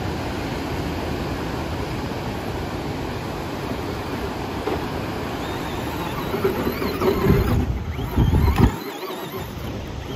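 Steady wind and surf noise, then from about six seconds in the electric motor of a Traxxas Slash 2WD RC truck whining in rising pitch as it revs and spins its wheels in loose sand, with low rumbling bursts that stop shortly before the end.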